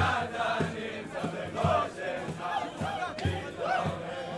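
Group of young men singing a Hasidic niggun together to acoustic guitar, over a steady low beat about twice a second.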